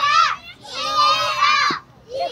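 Children shouting during a youth soccer match: two loud, high-pitched calls, the second lasting about a second.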